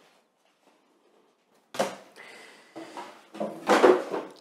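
Paper gift bag, card and cardboard packaging falling off a table onto the floor: a sudden thump a little under two seconds in, rustling, then a louder clatter near the end.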